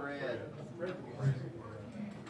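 Indistinct male speech, too faint to make out words, from audience members talking among themselves in a meeting room.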